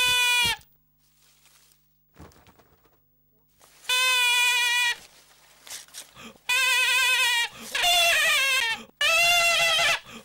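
A duck call blown in long, wavering, bleat-like blasts in a cartoon: one ending just after the start, then four more from about four seconds in, each about a second long.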